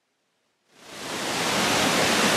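Triberg waterfall cascade rushing, fading in from silence less than a second in and settling into a steady, even rush of water.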